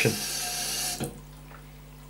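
Water from a turn-type basin tap running into a sink, cut off abruptly about a second in as the tap is turned shut; after that only a faint low hum remains.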